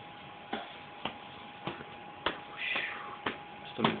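Quiet room with a faint steady high hum and about six sharp clicks or taps at uneven intervals, plus one brief higher scratchy sound a little past the middle.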